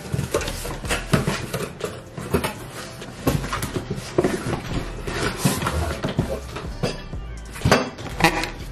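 Cardboard shipping box being opened and handled: a run of irregular scrapes, rustles and knocks, the loudest near the end as a white shoebox is lifted out.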